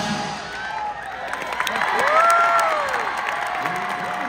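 Large crowd in stadium stands applauding and cheering just as the drums stop. About two seconds in, one voice calls out in a long rising-and-falling cry.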